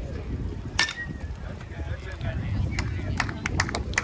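A baseball bat hits a pitched ball about a second in: one sharp crack with a brief ring after it. Scattered hand clapping from spectators starts near the end.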